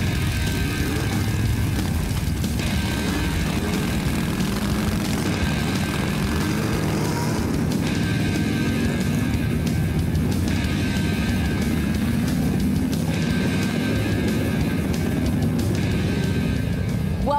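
Motorcycle engines running as bikes ride slowly past, their pitch rising and falling, mixed under background music.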